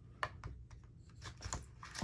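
Small plastic jars of loose shimmer pigment clicking and knocking against each other as they are handled: an irregular string of light clicks.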